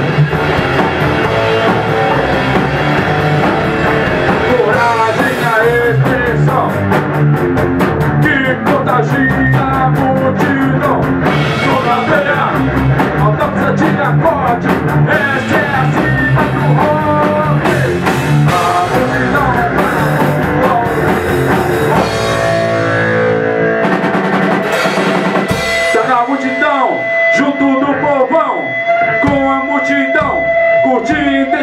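Rock band playing an instrumental passage: electric guitar lead over drum kit and electric bass, with no singing. About two-thirds of the way in, the drums fall back, and the guitar carries on more sparsely with held notes.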